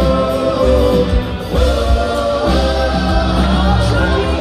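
Live rock band playing, with electric guitars, bass and drums under several voices singing long, held notes in harmony.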